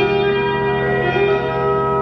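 Ambient experimental music: electric guitar run through effects pedals and laptop electronics, a steady dense wash of overlapping sustained tones with a new note coming in at the start.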